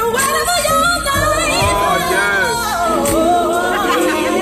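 Recorded gospel song playing: a lead singer's voice sliding up and down in long runs over the band.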